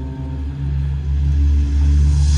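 Marching band music: a low sustained chord held under the ensemble, growing steadily louder.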